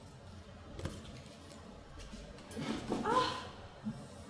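A brief human voice sound, short and wordless, about three seconds in. Before it there are a sharp knock a little under a second in and faint handling and shuffling noise, as if someone is moving things on a desk.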